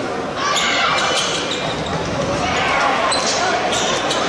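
Basketball being dribbled on a hardwood court amid the voices and noise of an indoor arena during a live game.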